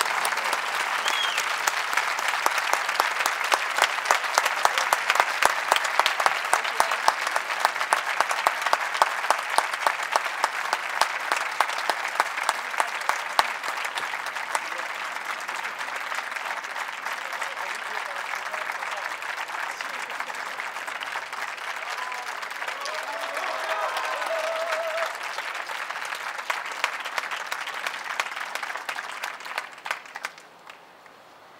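Audience applauding, loudest in the first half and gradually thinning, stopping at the end.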